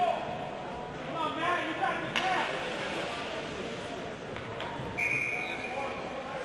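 Ice rink ambience during a stoppage in play: distant voices of players and spectators, a sharp knock about two seconds in, and a steady high tone lasting about a second near the end.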